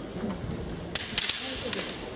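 Bamboo kendo shinai clacking together in a quick exchange of strikes: four sharp cracks come within under a second, starting about a second in.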